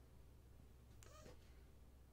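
Near silence: room tone with a steady low hum, and one faint, brief, high, wavering sound about a second in.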